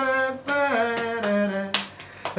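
A solo voice singing unaccompanied, holding a few notes that step down in pitch, with sharp finger snaps keeping time, the loudest near the end.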